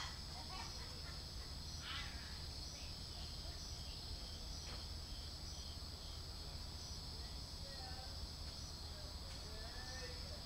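Steady, high-pitched chorus of night insects, with faint voices of distant people talking now and then, clearest near the end.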